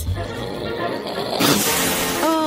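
A short hiss from a hot clothes iron, starting about one and a half seconds in, over background music; the hiss shows the iron is hot.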